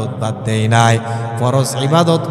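A man's voice intoning a Bengali waz sermon in a melodic, chant-like sing-song through a microphone, with drawn-out notes that bend in pitch.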